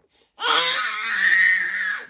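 A baby's long, loud, high-pitched squeal, starting about half a second in and rising then falling slightly in pitch.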